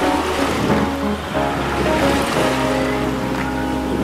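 Waves rushing and splashing along the hull of a heeled sailboat beating into the seas, under background music.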